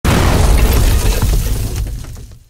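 Loud crash-like intro sound effect. It hits at once and its noisy, rumbling tail dies away slowly over about two seconds.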